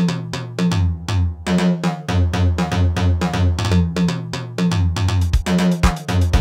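Korg Electribe SX sampler playing a looped drum-machine pattern from its Roland TR-626 sample kit: crisp, evenly spaced hi-hat and percussion hits over a short repeating bass line. Deep kick drum hits come in near the end.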